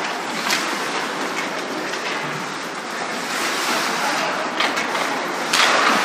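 Ice hockey rink noise during live play: a steady wash of skates scraping the ice, with a few sharp stick and puck clicks and a louder clatter near the end.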